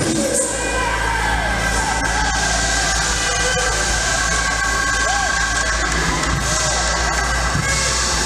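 Live church praise music: a steady held chord over a low, even bass, with a congregation shouting and cheering over it.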